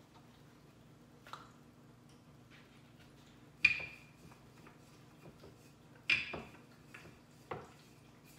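Rolling pin and chopping board knocking on a glass-top stove while chapati dough is rolled out: four sharp knocks, the second and third loudest with a short ring, over a faint steady hum.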